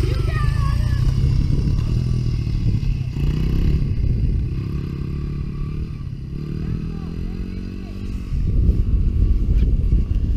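Small dirt bike engine revving as the bike rides away, its pitch climbing several times as it goes up through the gears and the sound growing fainter with distance.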